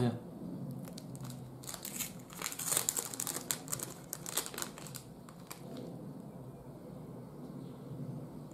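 Crinkling of a thin clear plastic bag around a wax melt bar as it is handled and opened, in a flurry of rustles between about one and four seconds in that thins out afterwards.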